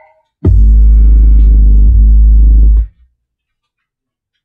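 Harman Kardon Onyx Studio 4 Bluetooth speaker playing bass-heavy music. A loud, deep bass note starts about half a second in and is held for about two and a half seconds with a short break in the middle. The music then cuts off about three seconds in.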